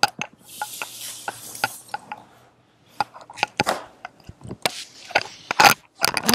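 Tarot cards and a hand being moved on a tabletop: a click, a soft sliding rustle for about two seconds, then scattered light taps and clicks.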